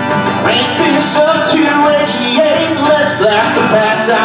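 A man singing while strumming an acoustic guitar, his sung melody rising and falling over the chords without a break.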